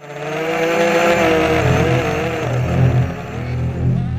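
Racing quadcopter's motors and propellers whining, the pitch wavering up and down as the throttle changes.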